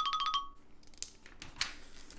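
Background music with a chiming, ringtone-like tone over a steady beat, fading out about half a second in. Faint taps and rustling of hands on the catalog's pages follow.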